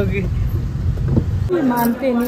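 Steady low rumble of a car's engine and road noise, heard from inside the moving car. It cuts off abruptly about one and a half seconds in, where a voice starts speaking.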